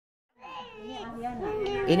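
Infant fussing and crying, starting suddenly about half a second in and growing louder toward the end; the baby has a high fever.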